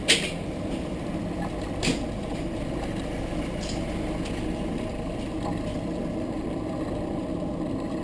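Steady low rumble of an idling motor-vehicle engine, with a couple of sharp knocks right at the start and about two seconds in.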